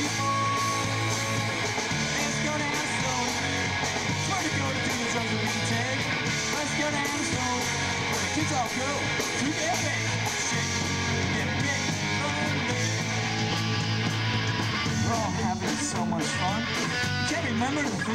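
A live rock band playing loud and steady: electric guitars over bass and drums.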